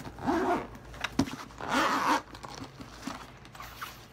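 Zipper on a shoe carrying case being pulled open in two strokes, a short one just after the start and a longer one about two seconds in, with a small click between them.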